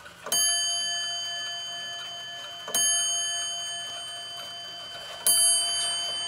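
Weight-driven wall clock striking its bell three times, about two and a half seconds apart, each stroke ringing on and slowly dying away: the clock striking three o'clock.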